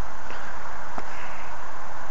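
Steady background hiss at an even level, with one faint click about a second in.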